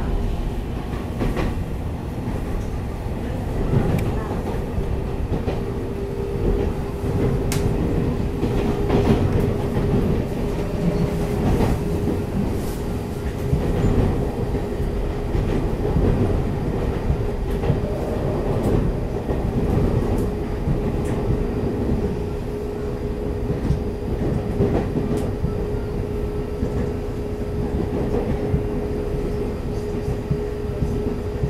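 Taiwan Railways EMU800 electric commuter train heard from inside the carriage while running: a steady low rumble of wheels on rail with scattered clicks. A steady one-pitch hum sets in a few seconds in and holds.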